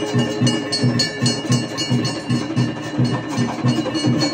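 Aarti percussion: a drum beaten in a fast, even rhythm of about five strokes a second, with bells ringing steadily over it.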